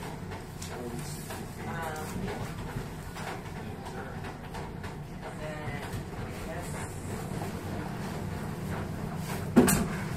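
Faint, indistinct voices over a steady background hum of room noise, with one sharp knock about a second before the end.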